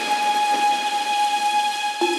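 A drum and bass (atmospheric jungle) track in a beatless passage: a held synth chord of several steady tones under a hissing noise wash, with no drums or bass.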